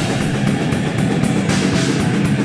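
A heavy metal band playing live: distorted electric guitar and a drum kit, loud and dense with no break.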